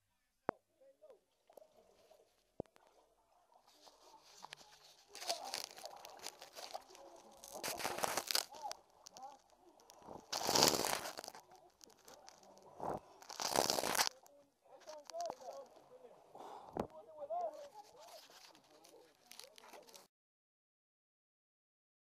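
A person crawling through a corrugated pipe: scraping and rustling with a few sharp knocks at first, then rougher noise with several loud bursts, under muffled voices. The sound cuts off suddenly about 20 seconds in.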